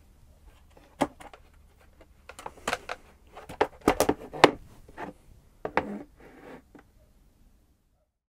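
Plastic fold-flat dish drainer being unfolded by hand: a string of sharp plastic clicks and clacks as its hinged end panels and sides are lifted and set in place, with short scraping of plastic on plastic and on the tabletop. The loudest clicks come together about four seconds in, and the handling stops shortly before the end.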